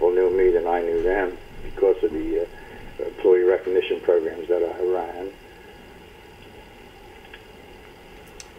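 A man speaking for about five seconds, then a pause with only faint, steady background noise.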